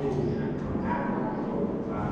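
Indistinct voices in a room, too unclear to make out words.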